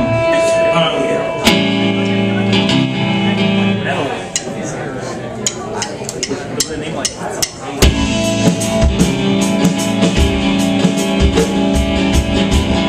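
A live rock band opening a song: electric guitar chords ring out on their own, then about eight seconds in the drum kit and the full band come in with a steady beat.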